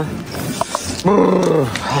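A dog howling: one long call about a second in that falls in pitch toward its end.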